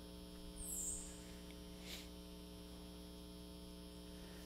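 Steady electrical mains hum in the sound system, with a brief soft hiss about a second in.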